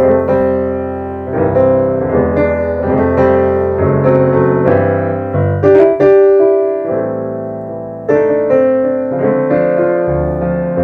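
Yamaha AvantGrand N1X hybrid digital piano played with both hands through its own speakers: full chords struck firmly and left to ring and fade, with a fresh loud chord every few seconds.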